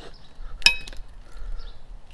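A Cold Steel bowie knife chopping once through a thin hand-held branch: a single sharp crack about two-thirds of a second in, with a brief metallic ring from the blade.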